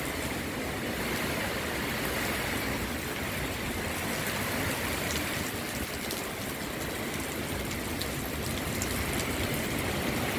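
Heavy rain pouring down in a steady downpour, with a few sharper drop hits standing out.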